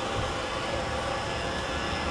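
Steady outdoor traffic rumble with a faint hum, with no single distinct event standing out.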